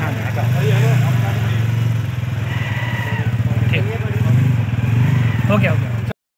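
A low, steady engine-like hum throughout, with people's voices talking over it.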